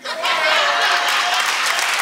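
Audience applause breaking out suddenly and continuing steadily, with some voices calling out in the crowd.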